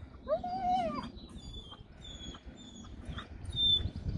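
A German Shepherd dog whining: one drawn-out whine rising and falling in pitch near the start, then a string of short, thin, high-pitched whimpers.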